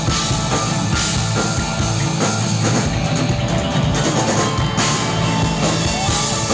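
Live rock band playing loud: drum kit with steady hits, plus electric guitar and bass, heard from the audience.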